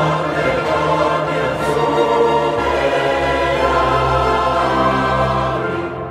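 Mixed choir singing with a chamber orchestra in a mid-19th-century Catalan sacred Matins setting, sustained chords that start to die away near the end.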